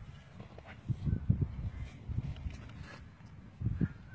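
Quarter horse mare's hooves thudding on dry grass as she is led at a walk, dull irregular footfalls, loudest about a second in and again near the end.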